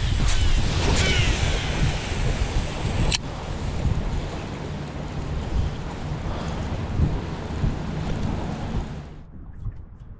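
Strong gusty wind buffeting the camera microphone as a heavy rumbling noise. It drops off sharply about nine seconds in.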